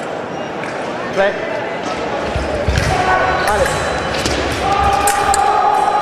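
Sabre fencers' footwork on the metal piste: a quick run of stamps and thuds about two seconds in as they attack, followed by a scatter of sharp clicks as the action closes.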